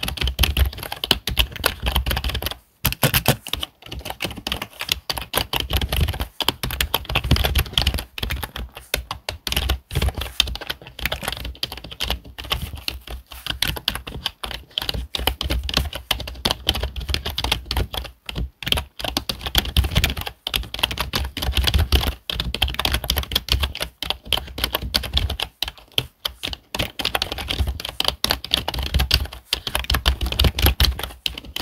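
Fast typing on a computer keyboard: a dense, irregular stream of key clicks from both hands, broken by a few brief pauses.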